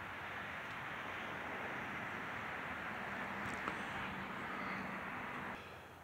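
Steady hum of a distant engine with a faint low tone in it, dropping away near the end.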